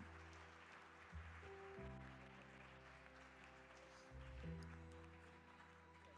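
Faint background music: soft held chords that change every second or two.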